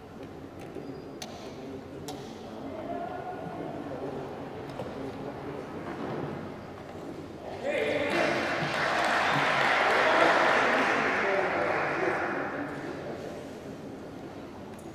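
Voices talking in a large indoor hall. About eight seconds in, a louder, noisy swell of sound rises suddenly and fades away over the next five seconds.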